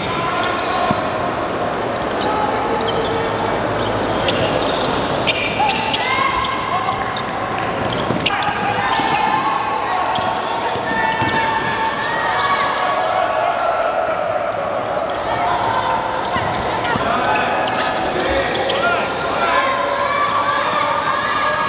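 A basketball being dribbled and bouncing on a hardwood court during play, with players' voices calling out over it.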